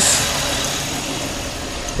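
Car engine idling steadily, its level easing down slightly.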